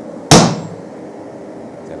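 A single sharp hammer blow on a hot-punching punch set in a red-hot steel billet on the anvil, with a brief metallic ring. It is the blow that drives the punch through and knocks out the plug for the hammer's eye.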